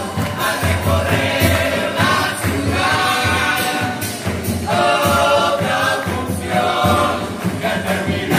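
Children's murga chorus singing in unison over a steady beat of murga drums and cymbals, heard from out in the audience.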